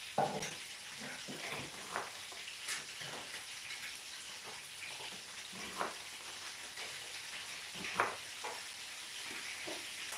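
Fish frying in hot oil in a pan, a steady sizzle, with a few sharp taps of a kitchen knife on a plastic chopping board as a red onion is sliced.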